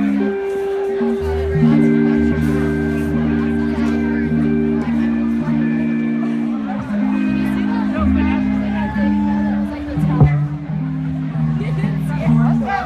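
Live band playing an instrumental passage: electric guitars, bass guitar and keyboards holding sustained chords that change every half second or so over a steady bass line. A single sharp knock sounds about ten seconds in.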